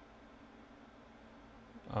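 Quiet room tone with a faint steady hum, then near the end a man lets out a loud, low vocal sound held on one steady pitch, heard as an 'um'.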